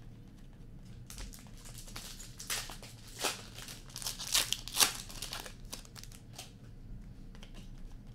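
Hockey card pack wrappers being torn open and crinkled by hand, in irregular bursts that are loudest and densest a few seconds in.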